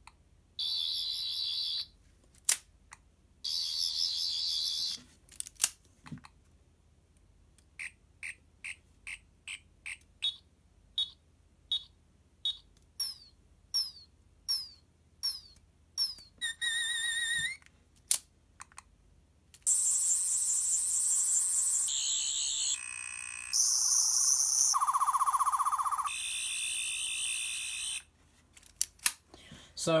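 Twelfth Doctor sonic screwdriver toy (a universal TV remote) in effects mode, playing its electronic sonic sound effects. Short high buzzing bursts come first, then a run of quick chirps and beeps about two a second, and from about two-thirds of the way in a longer stretch of changing, warbling tones.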